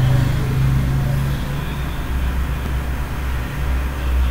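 Steady low background rumble with an even hiss and no speech, of the kind PANN files under road traffic.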